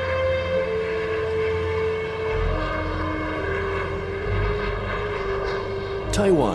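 Jet airliner flying low on its landing approach, a steady low engine rumble, mixed with background music of long held notes that change pitch a few times.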